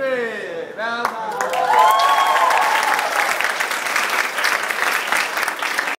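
A group of young people's voices calling out with falling pitch, then cheering, and from about two seconds in, many hands clapping in steady applause.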